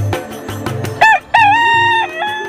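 A rooster crowing once, starting about a second in: a short first note then a long held one, loud over background music with a steady beat.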